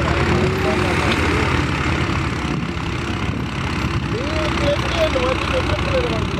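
Farm tractor's diesel engine running steadily as it hauls a trailer heaped with sand, with a low pulsing rumble.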